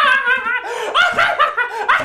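A man laughing hard and uncontrollably, his voice breaking into quick repeated 'ha' bursts, several a second.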